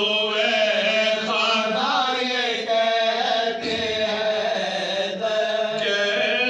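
Male voices chanting a soz, an unaccompanied Urdu mourning elegy, in long held, wavering melodic lines through microphones.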